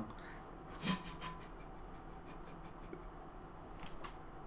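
A brief breathy sound about a second in, then a quick run of light clicks, about five a second, fading out over roughly two seconds.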